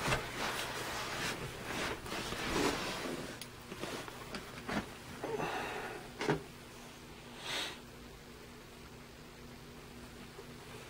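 Handling noise: irregular rustles and light clicks of plastic tubs and a feeding cup as they are moved, with one short sniff about seven and a half seconds in, then quieter, over a faint steady low hum.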